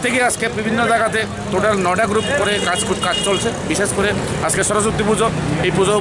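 A man speaking in an outdoor interview, with steady street traffic noise underneath.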